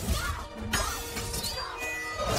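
Film fight-scene soundtrack: music with crashing, shattering impacts, including a sharp hit about three quarters of a second in.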